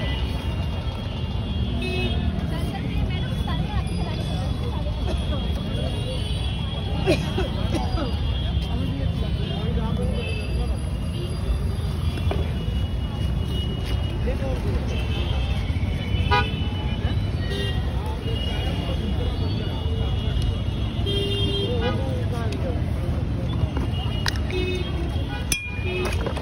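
Busy street ambience: a steady traffic rumble with occasional short vehicle horn toots and indistinct background voices, with a few sharp clicks of steel utensils.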